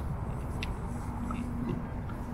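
Low, steady rumble of distant road traffic, with a steady hum joining about a third of the way in. A few faint crunches of footsteps on sand sit on top.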